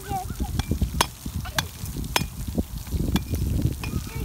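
Outdoor splash-pad ambience: an uneven low rumble of wind on the microphone, broken by several sharp clicks, with a few short chirps at the start.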